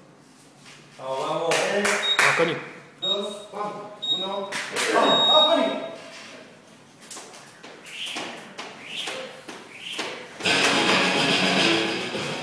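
Digital gym timer counting down: three short high beeps a second apart and a longer final beep, under loud voices. A few sharp taps follow, and rock music with guitar starts near the end.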